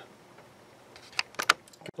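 A few short, sharp clicks and taps of handling over quiet room tone, bunched about a second and a half in; the sound drops out completely for a moment just before the end.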